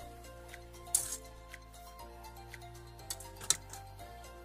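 Metal spatula scraping and knocking against a metal kadhai as leafy saag and chickpeas are stirred, with two sharp knocks, about a second in and again near the end, over steady background music.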